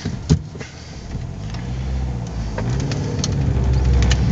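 2005 Mini Cooper R50's 1.6-litre four-cylinder engine, heard from inside the cabin, pulling under light throttle as the car starts to move slowly; its low hum grows steadily louder as intake manifold pressure rises. A sharp click about a third of a second in.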